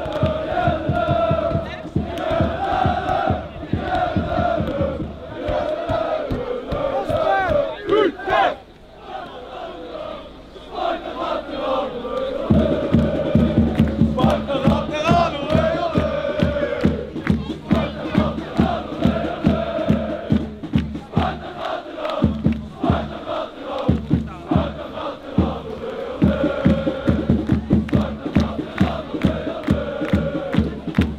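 Large crowd of football supporters chanting in unison. It dips briefly about a third of the way through, then returns with rhythmic low thumps, claps or a drum, about three a second.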